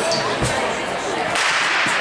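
Starting gun fired for the start of a 400 m race: a single sharp crack about half a second in.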